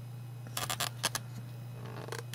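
Handling noise from a small circuit board held in the fingers close to the camera: a cluster of quick clicks and rustles about half a second in, a few more near the end, over a steady low hum.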